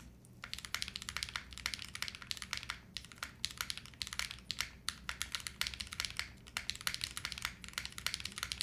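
Typing on a Retro 66 gasket-mounted custom mechanical keyboard fitted with KTT Rose switches: a fast, continuous run of keystroke clacks that starts just after a brief moment of quiet.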